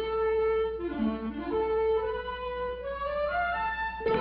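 Orchestral cartoon score: a wind-instrument melody of held notes, climbing step by step near the end.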